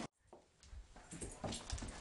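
A dog making faint, irregular sounds. They start about half a second in, after a brief silence.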